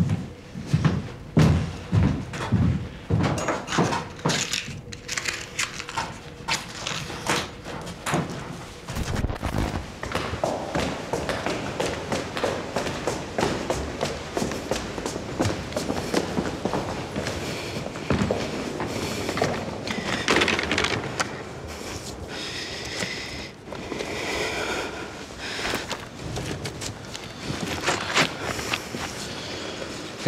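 Several heavy thuds in the first few seconds, followed by a long run of knocks and clatter.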